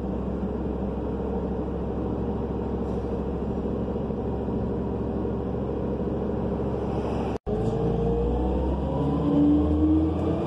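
City bus with a Cummins Westport C Gas Plus natural-gas engine, heard from inside the cabin, running steadily while standing. The sound cuts out for an instant about seven seconds in. Then the bus pulls away with a rising whine that grows louder as it accelerates.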